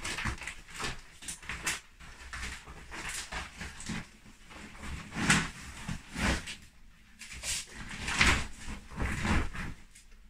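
Clear plastic pram rain cover crinkling and rustling in irregular bursts as it is unfolded and pulled down over the stroller's hood and seat.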